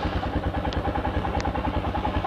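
Motorcycle engine running steadily at low revs with an even beat of about ten pulses a second, heard from the rider's seat.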